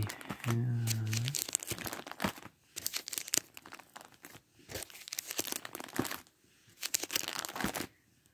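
Plastic movie cases being rummaged through and handled, crinkling and clicking in four or five bursts with short pauses between. A short hummed "mm" comes about half a second in.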